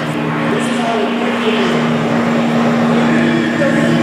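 Several electric floor fans running together: a steady motor hum under a rush of air. A thin higher whine joins about three seconds in.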